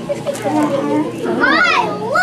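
Young children's high-pitched voices calling out and squealing without clear words, with a sharp rising-and-falling cry about one and a half seconds in.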